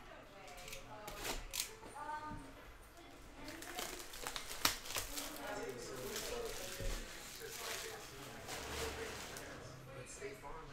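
Hands opening a sealed box of trading cards: plastic wrap crinkling and tearing, with a few sharp taps and clicks of handling.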